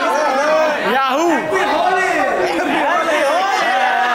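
Overlapping chatter of several people talking and calling out at once, with no single voice standing out.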